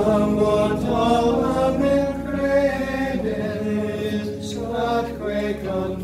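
Voices singing a liturgical chant, with steady held low notes sounding beneath the melody.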